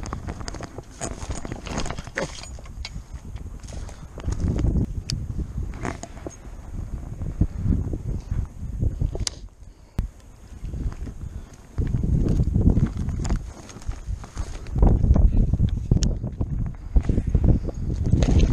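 Wind buffeting the microphone in gusts, with scattered clicks and crunches of footsteps on a rocky, grassy shoreline.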